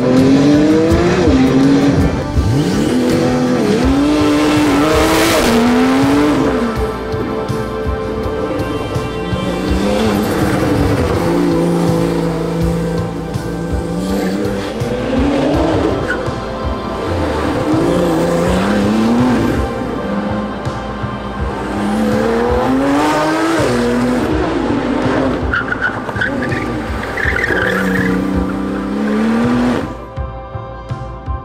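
Porsche 911 Turbo S twin-turbo flat-six being driven hard, revving up and dropping again and again, with tires squealing as the car slides.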